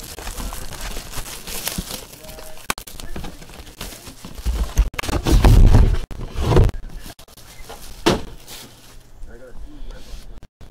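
Boxes and a silver card case being handled on a table close to the microphone: rubbing and sliding, a few sharp knocks, and heavy dull thumps about midway.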